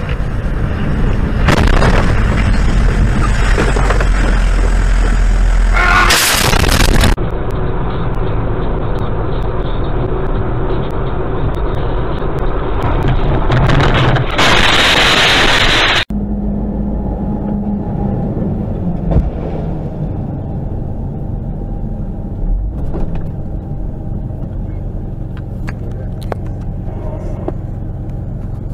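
Vehicle engine and road noise picked up by dashcams, changing abruptly several times as one recording cuts to the next. About halfway through there is a loud rushing noise for about two seconds.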